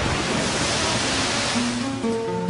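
Cartoon sound effect of a torrent of rushing water, a steady, even rush of noise, with background music faintly underneath.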